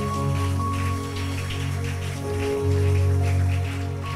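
Electronic keyboard playing slow, sustained chords over a steady low bass, with a congregation applauding over it.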